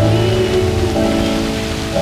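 Spray from the jets of a dancing water fountain splashing onto the pavement, a steady hiss, under music with long held chords.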